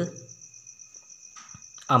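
A cricket trilling steadily at a high pitch in the background, with a faint lower steady tone under it.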